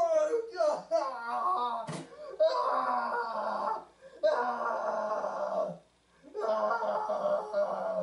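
A young man wailing in a mock cry over his broken $70 glasses: about two seconds of wailed words, then three long, drawn-out wails with short breaks between them.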